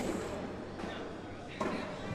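Low, steady background noise of a large indoor hall during a lull in the commentary, with a faint short sound near the end.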